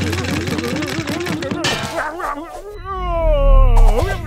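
Cartoon soundtrack: a quick, bouncing pattern of repeated rising-and-falling notes with light clicks, then near the end a long falling pitched wail over a deep rumble, the loudest moment.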